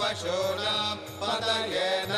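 Sanskrit Vedic mantras being chanted in a continuous recitation, the voice rising and falling in pitch, with short pauses between phrases.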